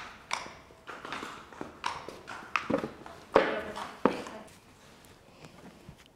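A pony's hooves clip-clopping on a concrete floor as it is led, a string of irregular single steps that thin out after about four seconds.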